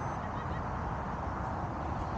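Steady wind rumble and hiss on the microphone. A brief high beep comes at the very start, and a couple of faint high chirps about half a second in.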